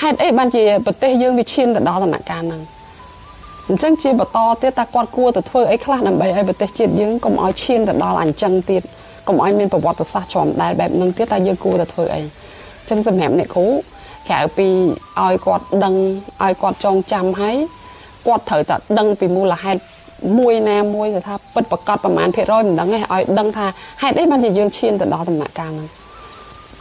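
A voice speaking almost continuously with short pauses, over a steady high-pitched drone of insects.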